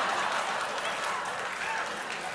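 Studio audience applauding and laughing, slowly dying down.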